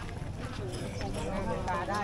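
People's voices talking over a low steady rumble; the voices grow louder in the second half.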